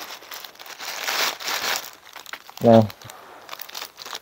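Plastic shipping mailer crinkling and rustling as hands pull and tear it open, loudest in the first two seconds and fading to faint handling rustles after.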